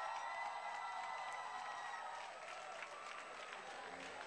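Audience applauding, with voices cheering over the clapping in the first half; the clapping eases somewhat toward the end.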